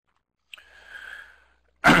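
A man breathes in softly, then clears his throat sharply just before the end.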